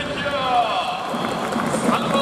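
Stadium public-address announcer's voice over the ballpark's loudspeakers, calling out a player in the starting-lineup announcement with long drawn-out syllables.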